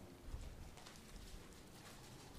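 A quiet room with a few faint, scattered light ticks and rustles of Bible pages being turned.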